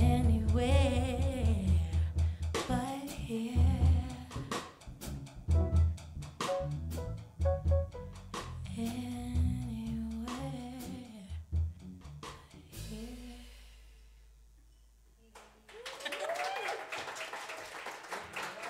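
Live jazz trio of piano, electric bass guitar and drum kit playing the last bars of a tune. A low bass note is left to fade out about two-thirds of the way through, and then an audience starts applauding and cheering near the end.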